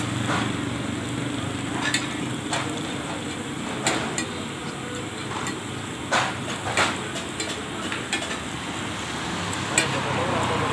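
Metal spatula clinking and scraping on a large flat iron griddle (tawa) as parathas are turned and pressed, in short irregular strikes about once a second. Beneath it runs a steady background rumble.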